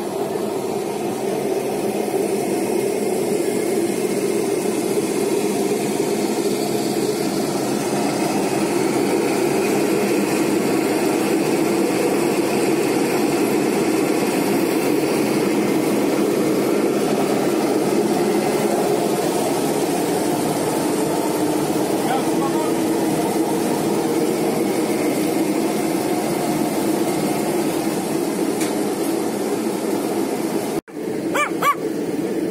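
Motorised grape crusher-destemmer running steadily, a continuous machine drone while grapes are fed into its steel hopper.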